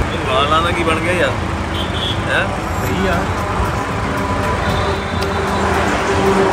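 Steady traffic noise from vehicles passing on a busy highway, with a man's voice heard briefly in the first couple of seconds.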